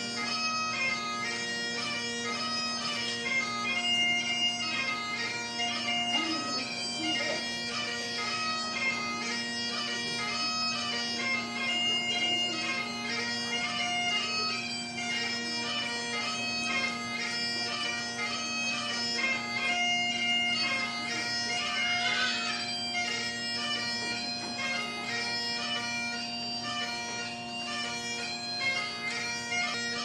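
Bagpipe music: a steady drone held throughout under a quick melody of short notes.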